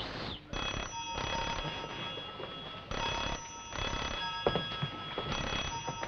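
Telephone bell ringing in three long bursts, each over a second, with short pauses between.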